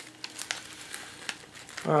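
Foil trading-card pouch crinkling as it is handled, a run of small crackles.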